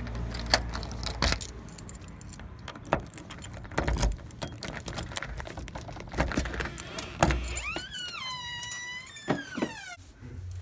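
A key ring jangling and a key clicking in a deadbolt lock as it is worked, with sharp metallic clicks scattered throughout. From about two and a half seconds before the end, a drawn-out high-pitched squeal that rises, holds and then falls.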